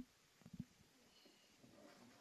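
Near silence: a pause in the race commentary, with two or three faint, short low clicks about half a second in.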